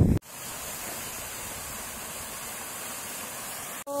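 Steady rush of shallow water running over rock, an even hiss with no other sound, which starts abruptly just after the start and cuts off abruptly just before the end.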